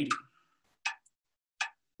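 Metronome app clicking at about 80 beats per minute: two short clicks, three quarters of a second apart.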